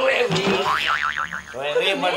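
Comic 'boing' sound effect: a springy tone whose pitch wobbles rapidly up and down several times and then dies away, with speech around it.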